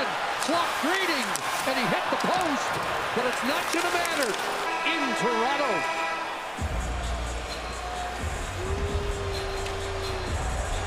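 Arena crowd noise with raised voices as the game clock runs out. A horn sounds about five seconds in, marking the end of the game. Music with heavy bass then starts abruptly and carries on.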